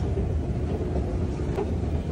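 Escalator running: a steady low rumble with a faint even hum, the sound of the moving steps and drive under the rider.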